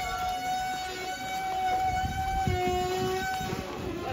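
A long, steady held note from a wind instrument in the festival procession's music, with a second, lower note joining briefly near the end, over the hubbub of a street crowd.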